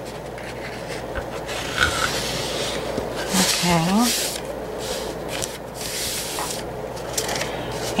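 Hands rubbing and sliding over a folded paper bag, pressing its creases flat, with paper scraping against the tabletop in a steady rubbing sound.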